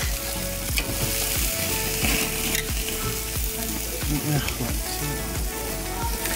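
Burger patties and hot dogs sizzling on a gas grill: a steady, hissing sizzle, with repeated low thumps about once or twice a second.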